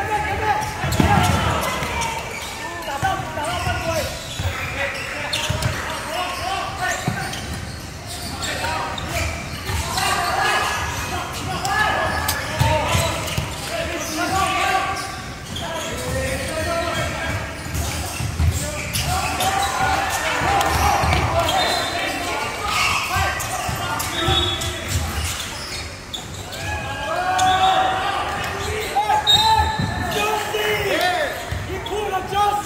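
Basketball dribbled and bouncing on a hardwood court at intervals, with players' and spectators' voices and calls going on throughout, echoing in a large hall.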